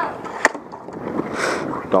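Dek hockey play: one sharp clack of a stick on the ball about half a second in, then a brief hiss near the middle, over a steady murmur of voices around the rink.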